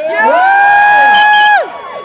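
A woman's long, high-pitched whoop answering a call for cheers. It rises quickly, holds one steady pitch for about a second, then drops off, with a faint crowd cheering underneath.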